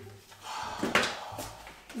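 Quiet handling noises: a couple of light knocks and some rustling as things are picked up off a countertop.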